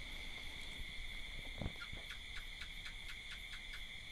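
Faint pause in a talk recording: a steady high-pitched two-tone trill in the background, joined in the second half by a short run of light, even ticks about six a second.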